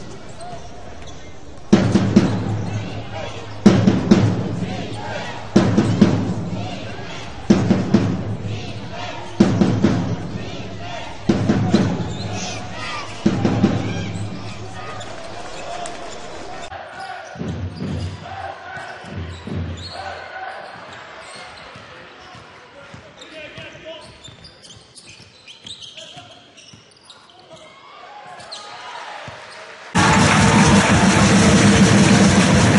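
Basketball game sound in an indoor arena: a heavy thump every two seconds or so through the first half, each ringing briefly in the hall. After that comes a quieter, fading stretch of crowd and court noise.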